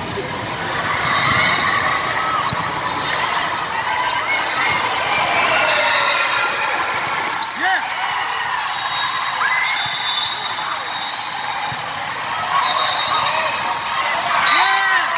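Din of a large volleyball hall: balls being struck and bouncing across many courts, sneakers squeaking on the sport-court floor, and spectators chattering, all echoing in the big room.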